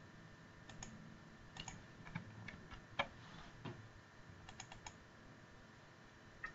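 Faint, scattered clicks of a computer keyboard and mouse during spreadsheet editing, with a quick run of about four clicks shortly before the end.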